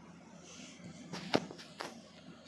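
A few sharp clicks and knocks from hands working parts in a refrigerator's compressor compartment, with the loudest about a second and a third in. A faint brief hiss comes just before them.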